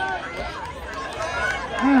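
Background chatter of spectators at an outdoor track. A man's announcing voice starts up near the end.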